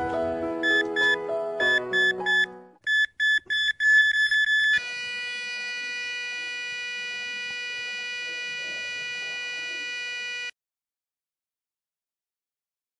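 Heart-monitor sound effect: quick repeated electronic beeps over the tail of a plucked-string tune, then, about five seconds in, one continuous flatline tone, the sign of a heart that has stopped, which cuts off suddenly near the end.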